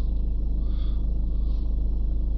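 Ford Mondeo 1.6 TDCi diesel engine idling steadily, a low rumble heard from inside the car.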